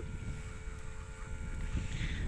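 Low rumble of wind on the microphone over open sea, aboard a small boat, with a faint steady hum underneath.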